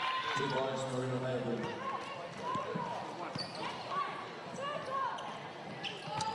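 A basketball being dribbled on a hardwood court amid arena crowd noise, with a voice calling out in the first second or so.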